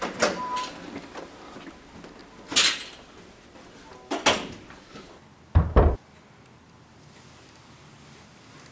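Door sounds: three sharp clacks about two seconds apart, then two heavy, low thuds in quick succession about five and a half seconds in.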